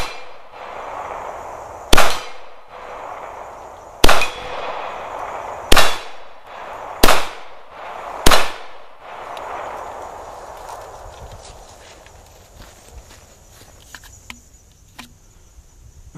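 Five shots from a Ruger P95 9mm semi-automatic pistol, one to two seconds apart in the first half, each followed by a ringing clang from steel targets being hit.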